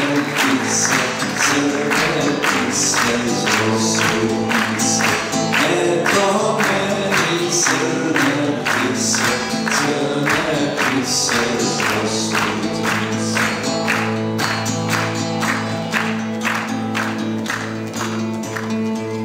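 Acoustic guitars and a small mandolin-like plucked string instrument playing a live instrumental passage with a steady, even strummed rhythm.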